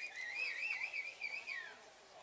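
A single high, wavering whistle lasting nearly two seconds, its pitch wobbling up and down before sliding down at the end.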